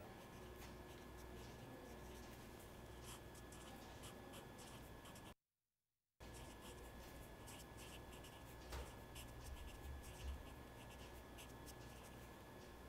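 Felt-tip marker writing on paper: faint, scattered scratching strokes as words are written out, broken by a moment of dead silence a little past the middle.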